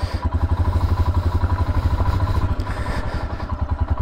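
Royal Enfield Himalayan's air-cooled 411 cc single-cylinder engine idling, with a steady, rapid, even pulse of exhaust beats.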